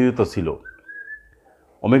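A man speaking for a moment, then in the pause a faint, short, high whistling tone lasting about half a second, rising slightly in pitch.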